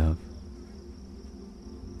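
Quiet steady background bed under the narration: a thin, high-pitched continuous trill over a faint low hum.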